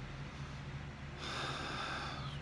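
A man's audible breath drawn in through the nose, starting about a second in and lasting about a second, over a steady low hum.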